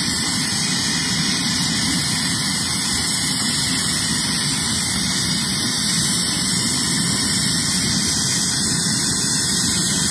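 A steady, unchanging hiss with a low rumble beneath it, with no separate knocks or clanks.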